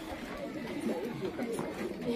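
Low background chatter of many voices from an audience of schoolchildren.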